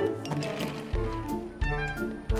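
Cartoon background music: a score of pitched notes, with deep bass notes coming in about a second in and again near the end.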